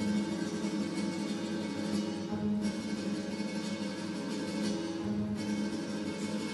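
Guitar-led instrumental music from the skater's free-skate program, playing at a steady level.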